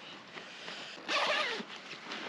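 A zip on a nylon hiking backpack drawn open in one short rasp about a second in, as a hand works at the top of the pack.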